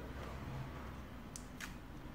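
Two small clicks, about a third of a second apart near the middle, from a plastic toy ukulele being handled to get its pick out, over a low steady room hum.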